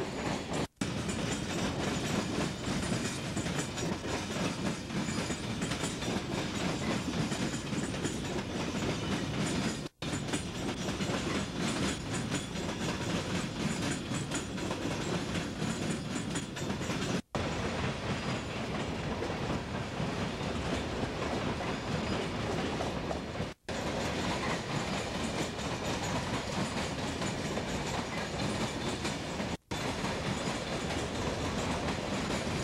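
Freight train of covered hopper cars rolling past, its wheels clattering over the rail joints and diamond-crossing frogs in a steady, heavy rumble. The sound cuts out for an instant about every six or seven seconds.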